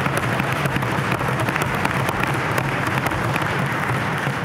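Members of a legislative chamber applauding with a dense, steady patter of desk-thumping and clapping.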